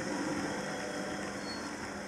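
Steady low background noise of a large hall, with no distinct event.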